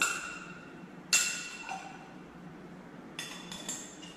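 Petri dish lids clinking as they are set and closed over the agar plates: a clink at the start, a loud ringing clink about a second in, and two lighter clinks near the three-second mark.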